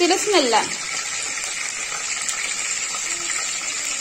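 Green chillies frying in hot oil in a kadai, giving a steady sizzling hiss.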